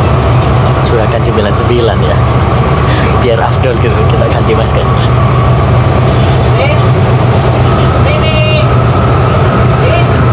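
A voice over a steady, loud low drone, with no pause in the level.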